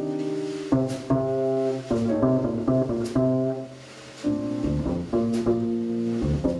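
Live jazz band playing an instrumental passage: keyboard chords over upright double bass, with drum-kit cymbal strikes. The band drops quieter for a moment about four seconds in.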